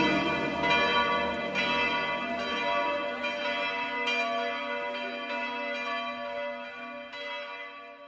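The instrumental close of a Christian hymn recording: bell tones struck a little faster than once a second over a held low note, the whole fading steadily away.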